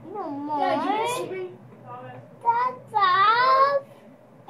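A young child's high-pitched, wordless vocalizing: a few sing-song squeals that glide up and down, the longest and loudest near the end.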